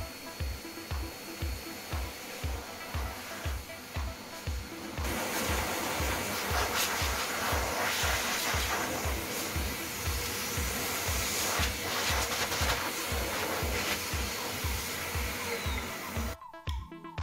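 Hand-held hair dryer blowing a steady rush of air over a dog's coat, louder from about five seconds in, over background music with a steady beat.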